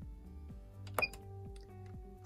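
A Puloon ATM's side function key pressed once about a second in: a sharp click with a short high-pitched beep from the machine acknowledging the key press.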